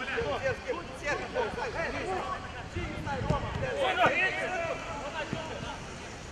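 Players' voices calling and shouting on a small outdoor football pitch over a low rumbling background, with a couple of dull thuds about three and four seconds in.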